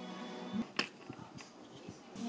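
An AA battery being pressed into a plastic thermostat battery holder: one sharp click under a second in, then a few faint clicks and taps.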